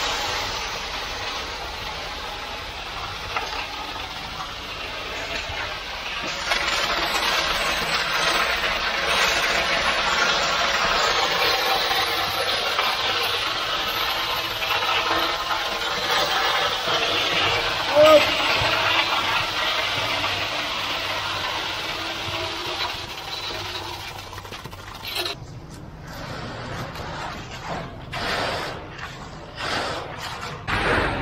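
Wet ready-mix concrete rushing down a mixer truck's chute, a steady rough hiss with the truck's engine running underneath. The flow eases off about 24 seconds in, leaving scattered knocks and scrapes.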